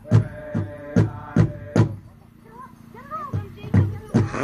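Pow wow drum group beating a large drum in a steady beat of about two and a half strokes a second, with singers over it. The drum and song stop about two seconds in, leaving only voices in the pause, and the drumming starts up again a little after three seconds: the stop-and-start of a candy dance song.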